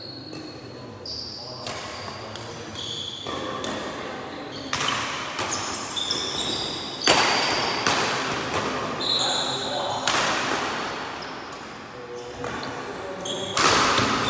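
Badminton rally in an echoing hall: rackets strike the shuttlecock in a run of sharp smacks, the hardest about seven seconds in and near the end, with short squeaks of court shoes on the wooden floor between hits.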